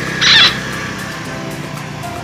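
Background music with sustained tones, broken about a quarter second in by a short, loud, high-pitched sound.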